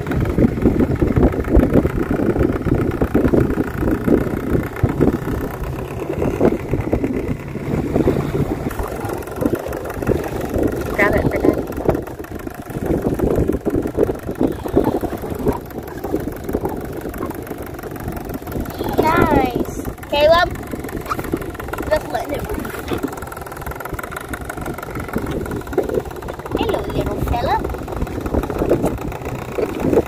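Small outboard motor running on an inflatable dinghy under way, with children's voices over it.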